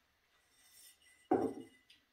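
Copper cocktail shaker tin set down on a wooden counter with a single knock about a second and a half in, then a light metal click near the end.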